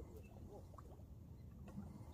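Near silence: faint low background rumble with a few soft, short clicks.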